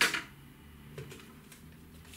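Quiet room with one faint short click about a second in, from handling a tape measure.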